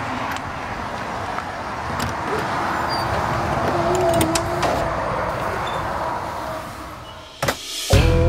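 Steady outdoor background noise with scattered clicks and knocks as a person handles an RV's entry door, and a single loud knock near the end.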